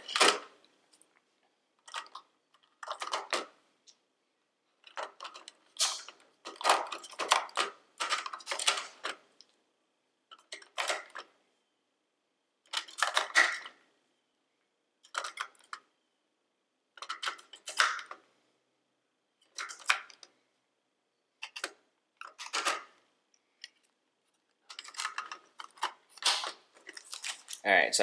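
AA batteries being pushed one by one into the spring-contact battery compartment of a plastic trail camera. Short bursts of clicks and plastic rattles come every second or two, with silent pauses between them.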